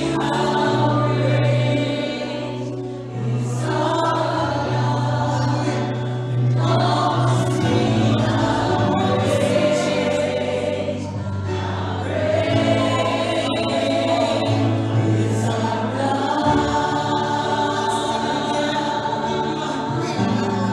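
Live worship music: several singers singing together in long held phrases over steady low accompanying notes.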